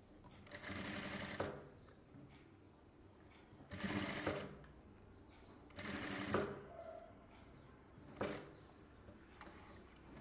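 Industrial sewing machine stitching in four short runs. The first three last about a second each and the last is brief, with pauses between them.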